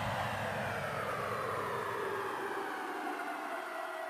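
Electronic whoosh sound effect sweeping slowly down in pitch and fading, as the low beat of the electronic background music dies away in the first couple of seconds.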